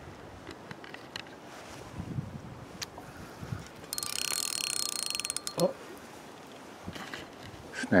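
Fishing reel giving a fast ratcheting buzz for about a second and a half, about four seconds in, ending in a few separate clicks, as the line is pulled in against a snag.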